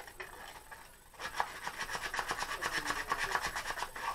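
Fast, even back-and-forth rasping as something is worked against the wood of a small wooden speaker mount by hand, roughly ten strokes a second. The strokes start about a second in, after a quieter moment.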